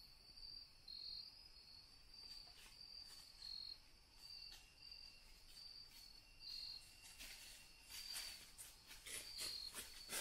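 Faint insect chorus: crickets chirping in a high pulsed trill about twice a second. In the last few seconds, a run of quick crackling rustles in dry leaf litter.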